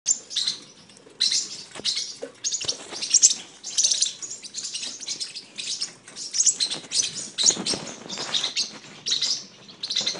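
Parrotlet chirping: rapid, high chirps that run almost without a break, with short lulls about one second in and again near six seconds.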